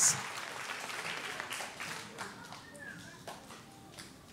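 Faint murmur and a few scattered claps from a children's audience in a hall, dying away.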